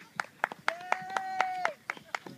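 Spectators clapping in an uneven patter. In the middle, a long held call from another voice lasts about a second.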